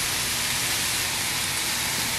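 Diced chicken breast sizzling steadily in a hot frying pan on a gas hob.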